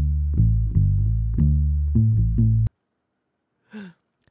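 Jazz sample loop of plucked upright bass playing a line of low notes, about two or three a second, that cuts off suddenly a little after halfway through.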